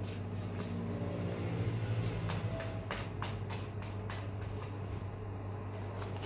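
Tarot cards being shuffled by hand: scattered light clicks and taps of the cards against each other, over a steady low hum.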